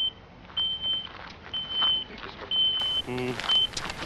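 Radio pager bleeping: a steady high beep about half a second long, repeated roughly once a second, five times, calling the crew to get in touch.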